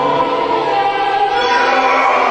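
Background music: a choir singing held notes, changing chord about one and a half seconds in.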